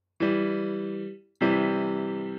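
Soundtrap's Grand Piano software instrument playing two chords, one after the other. Each chord is struck and rings for about a second as it fades. The second chord is a C major triad.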